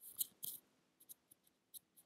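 A few brief, hissy scraping or rustling sounds in the first half-second, followed by a handful of faint, scattered clicks.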